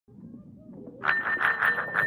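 Electric bell ringing, like a school bell, with a fast, even hammering trill under a steady high tone. It comes in about a second in, after faint low sounds, as the recorded opening of a song.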